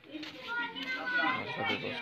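Children's voices, talking and calling out in overlapping bursts.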